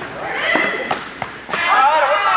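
Spectators' voices shouting during a youth indoor soccer game, with a few sharp knocks of the ball being kicked.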